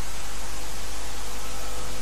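Steady, even hiss with a faint low hum underneath: the background noise floor of a sermon recording.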